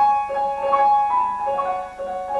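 Grand piano played solo in a quick, light passage in the middle and upper register, with notes changing several times a second.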